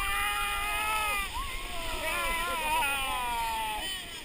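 Several people screaming together in long, drawn-out cries while riding an inflatable tube down a whitewater rapid, over the rush of the river. The cries break off just before the end, leaving the water.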